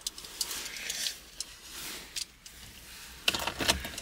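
Faint clicks and rustling of small objects being handled inside a car, with a cluster of sharper clicks near the end.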